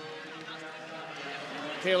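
Indistinct hubbub of a large indoor arena crowd between periods, a steady murmur of many voices, with a commentator's voice coming in just before the end.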